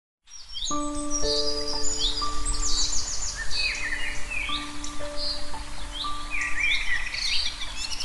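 Birds chirping and twittering in quick, repeated calls over soft background music of long held notes that comes in just under a second in.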